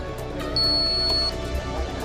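Shoe-mounted metal detector beeping once, a steady high-pitched electronic tone lasting under a second, starting about half a second in: the signal that it has found metal, here the coins it is held over.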